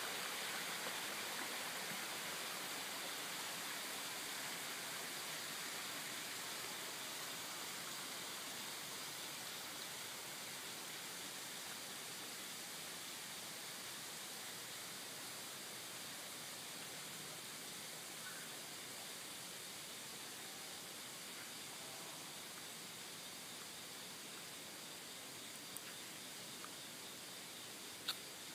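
Steady rushing of a valley stream, fading slowly.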